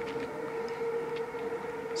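A steady hum holding one unchanging pitch, over faint background hiss.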